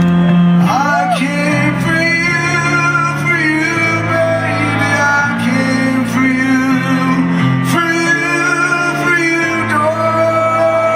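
Live concert recording of a male singer singing a slow song over sustained accompanying chords that change every second or so.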